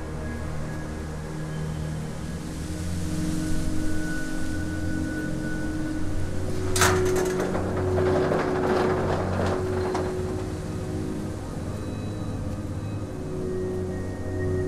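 Dark horror score: a low sustained drone, with a sudden sharp hit about seven seconds in followed by a few seconds of noisy clatter.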